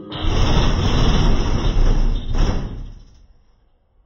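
Car audio subwoofers playing heavy bass loud enough to overload the phone's microphone into a distorted, rattling boom. It dies away over the last second or so.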